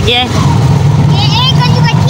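Auto-rickshaw engine running with a steady low drone, heard from inside the open passenger cabin while riding. A voice starts talking over it about a second in.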